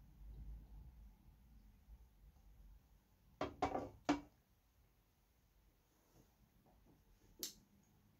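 A man taking a big mouthful of beer from a glass, faint, followed by three short sharp sounds about three and a half to four seconds in. A single soft click comes near the end.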